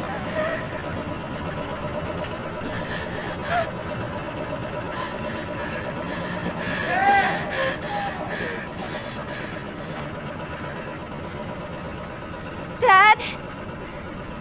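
Faint, indistinct voices over a steady background hum, with a short, sharp sweeping chirp about a second before the end.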